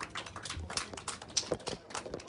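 Scattered applause from a small audience: irregular, separate hand claps, several a second, at the end of a song.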